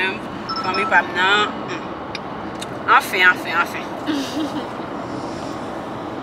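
Steady road noise inside a car's cabin, with women's voices breaking in twice over it.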